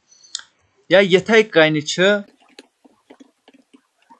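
Computer keyboard being typed on: a run of faint, irregular key clicks through the second half, as new characters are entered.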